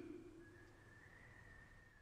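Near silence: the last word of a voice trails off in the first half second, then only a faint steady high tone remains.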